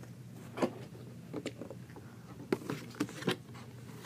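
Light clicks and taps of small plastic toy pieces and packaging being rummaged through and handled, a scattered handful of sharp ticks over a low steady room hum.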